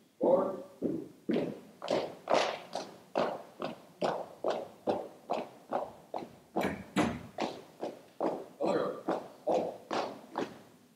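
A color guard marching in step across a hard floor, about two footfalls a second, each step echoing in a large hall.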